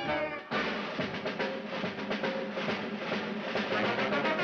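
Theme-song music: a held sung note ends about half a second in, and the band goes on with a drum roll on snare and bass drum under held band tones.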